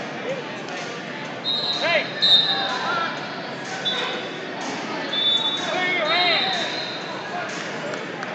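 Wrestling shoes squeaking on the mat, with sharp arching squeaks about two seconds in and again around six seconds, over a background of voices echoing in a large hall.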